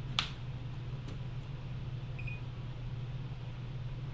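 A multimeter test probe clicks sharply once against a TV power-board connector pin, with a couple of fainter taps about a second in. A steady low hum runs underneath, and a brief faint beep comes about halfway.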